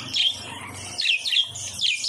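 Budgerigars chirping: a string of short, high chirps, several of them quick downward slides.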